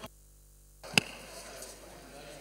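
The audio feed drops to dead silence for most of a second, then a single sharp click is followed by faint room noise. The pattern is typical of a desk microphone being switched on in the chamber.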